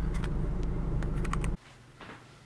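Steady low rumble of a car interior, with a few faint clicks, cutting off suddenly about one and a half seconds in and leaving quiet room tone.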